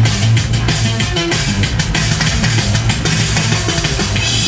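Live band music: a loud instrumental passage with a steady drum beat over a sustained bass line.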